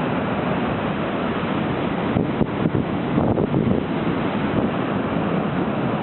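Atlantic surf breaking and washing over shoreline rocks: a steady rushing with swells of louder surge, and wind buffeting the microphone.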